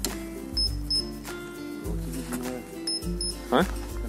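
Background music with held notes over a bass line. Two pairs of short high beeps sound over it, one pair about a second in and another about three seconds in.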